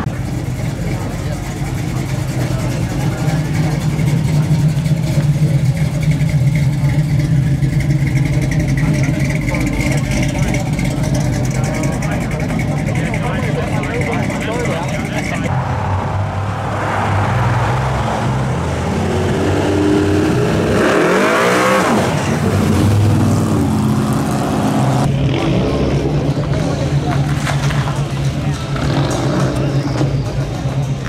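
Classic American muscle cars' engines rumbling loudly as they pull out one after another, with one engine rising in pitch and falling away again about twenty seconds in.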